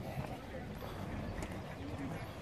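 Footsteps on stone paving, with faint voices in the background.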